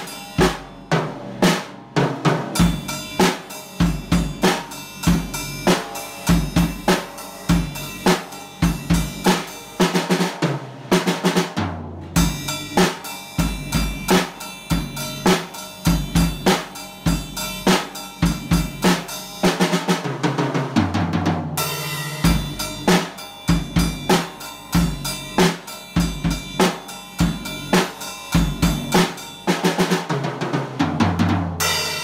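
Drum kit played in a steady groove: bass drum, snare and cymbal strokes in an even rhythm, with strong hits about twice a second.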